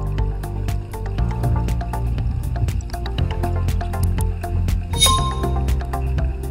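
Background music with a steady low bass and a fast, even ticking beat, about four ticks a second, with a brief brighter accent near the end.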